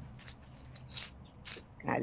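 A lull in a video-call conversation: a faint low hum and a few brief, soft hissing sounds, with a person's voice starting just before the end.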